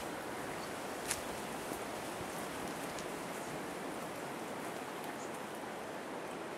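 Steady hiss of outdoor background noise, with one sharp click about a second in and a fainter one about three seconds in.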